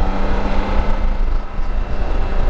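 BMW K1600GTL's inline-six engine running steadily while riding, heard from the rider's seat over a heavy low rumble of wind.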